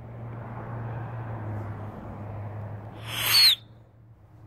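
Steady low hum under a faint rustle of noise, then about three seconds in a short, loud hissing call with a falling whistle in it: a man calling a dog to him.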